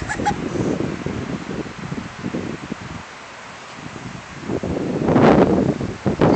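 Wind rumbling and rustling against a phone microphone, rough and uneven, swelling louder for about a second near the end.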